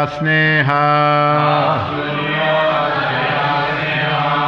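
A man chanting a line of a Sanskrit verse in a steady, held intonation, with a congregation chanting the line back in unison from about a second and a half in.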